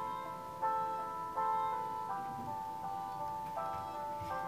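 Instrumental passage of a pop ballad with no singing: held notes that change about every three-quarters of a second.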